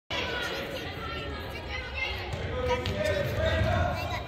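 Echoing voices of players and spectators in a gymnasium, with a futsal ball being kicked and bouncing on the hardwood court.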